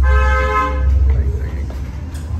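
A single steady horn-like tone lasting about a second, over a steady low rumble.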